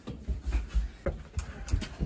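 Scuffling and handling noise: irregular low thuds and rumbling, with a few sharp knocks about a second in and again near the end, as a person is grabbed and the handheld camera swings about.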